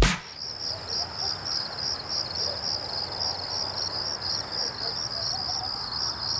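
The song's final hit cuts off right at the start, leaving crickets chirping in a steady, rapid pulse over low night-time background noise.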